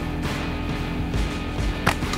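Background music, with a single sharp snap near the end as a catapult is shot.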